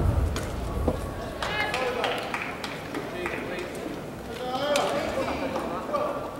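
Badminton rally ending: a racket striking the shuttlecock at the start and another sharp hit about a second in, followed by voices and calls echoing in the sports hall.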